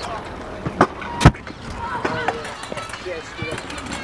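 Stunt scooter landing on concrete: two sharp impacts about a second in, the second the louder, then the wheels rolling on the concrete.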